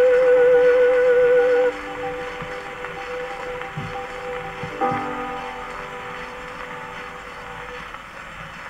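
An acoustic-era 78 rpm disc played through a horn gramophone: a soprano holds a loud final note with vibrato that ends about two seconds in. Quieter sustained accompaniment chords follow, with a new chord about five seconds in, over steady record surface hiss.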